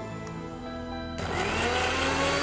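Electric mixer grinder switched on about a second in, its motor spinning up with a rising whine as it grinds tomato, ginger and salt into a chutney.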